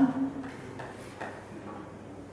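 Chalk drawing lines on a blackboard: a few faint taps and strokes, after the end of a spoken word at the very start.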